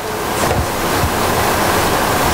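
Audience applause that builds in the first half second, then holds steady.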